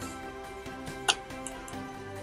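Soft background music of steady held notes, with a single sharp mouse click about a second in.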